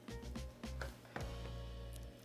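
Quiet background music with soft low beats and sustained tones.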